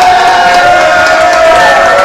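A voice holding one long, steady note into a microphone through the club's PA, with crowd noise underneath.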